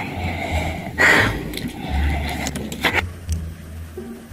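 A woman breathing hard through an open mouth, with a loud, sharp gasp about a second in and another near three seconds: she is reacting to the burn of very spicy noodles.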